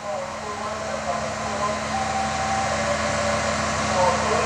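Sound-installation soundtrack playing in the room: a steady rushing noise with a low hum underneath and short pitched fragments over it, swelling up over the first second.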